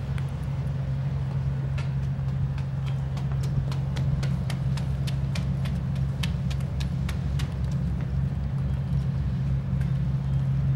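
A steady low drone throughout, with irregular sharp taps of footsteps on a wooden boardwalk.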